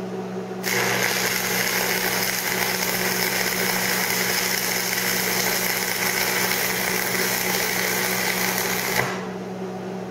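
A 7014 stick electrode burning on AC from a Lincoln Electric buzzbox transformer welder turned down to 100 amps. The arc strikes under a second in and runs as a steady crackle and hiss over the welder's hum. It breaks off about a second before the end, leaving only the hum.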